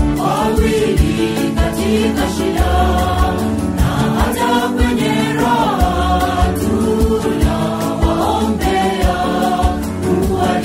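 A mixed choir of men and women singing a Swahili gospel song over a backing track with a steady beat and bass.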